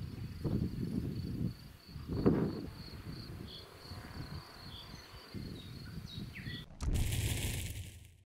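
Steady high-pitched trilling of insects in a summer meadow, under irregular low rumbling noise on the microphone that peaks about two seconds in. Near the end a loud swoosh sound effect comes in.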